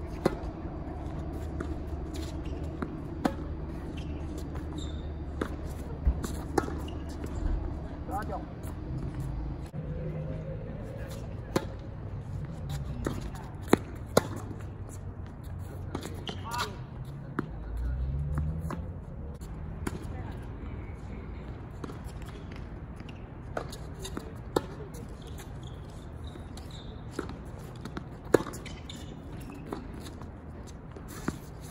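Tennis balls struck by racquets and bouncing on a hard court, sharp pops every second or two, over a steady low hum.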